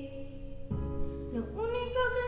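A girl singing a Spanish-language ballad over a recorded instrumental backing track. A held chord gives way to a new chord with deep bass about two-thirds of a second in, and near the end a note slides upward into the next phrase.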